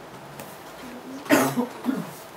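A person coughing twice in a quiet room: a sharp cough a little past a second in and a smaller one just before the end.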